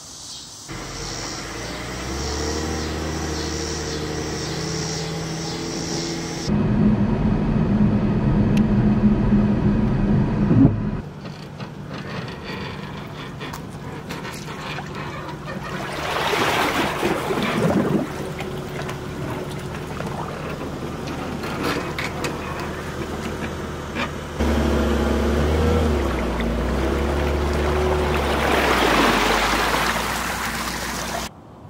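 A run of separate engine and water sounds cut together. A vehicle engine runs steadily with low droning tones. Around the middle, water splashes and rushes as the boat trailer's wheels back into the lake. Near the end, an outboard motor runs with its cooling-water stream splashing onto the water.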